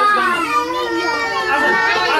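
Several adults and small children talking over one another in lively overlapping chatter.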